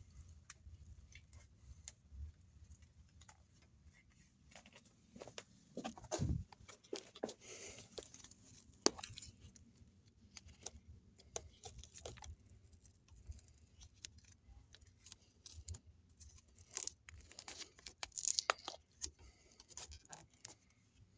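Handlebar tape being unwound and peeled off a bicycle drop bar by hand: faint, irregular rustling and peeling noises with scattered sharp clicks, a little louder about six seconds in and again near the end.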